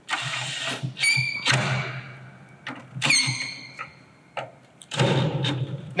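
Cordless drill/driver running in three short bursts with a motor whine, driving screws into a threaded metal speaker mounting bracket to snug them up.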